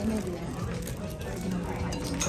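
Low voices and background music, with the crinkle of a thin plastic bag being pulled open by hand.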